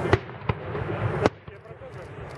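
Aerial firework shells bursting: three sharp bangs in quick succession, the third, a little over a second in, the loudest.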